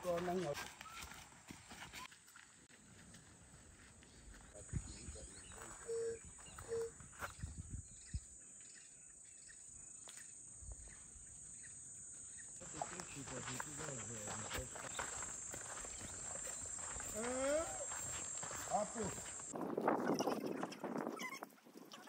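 Quiet outdoor ambience of people walking a dirt path: scattered light footsteps and rustles, with faint men's voices calling in the distance that grow louder near the end.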